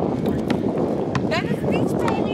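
Outdoor ambience: a steady noisy haze with people's voices, a few short sharp knocks and some brief rising calls near the middle.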